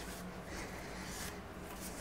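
An oily sponge rubbed over the bare steel of a machine vise in two soft strokes, over a steady low hum.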